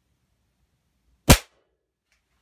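A single shot from a .177 Umarex multi-pump air rifle about a second in: one sharp crack that dies away quickly as the pellet hits a composite-toe safety shoe set on a board target.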